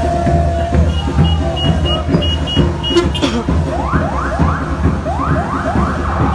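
Noise of a football supporters' crowd in the street, with a run of short high beeps in the first half. About four seconds in a siren starts, sweeping up in pitch over and over, about three times a second.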